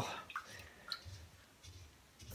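Faint wet swishing of rice grains rubbed by hand in water in a stainless steel bowl, with a couple of small drips or clicks in the first second. It dies down to almost nothing in the second half.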